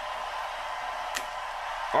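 Steady hiss of background noise with one faint click a little over a second in, from plastic wrestling action figures being handled.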